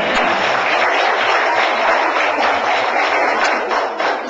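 An audience of pupils applauding in a classroom: dense, steady clapping that starts as the song ends.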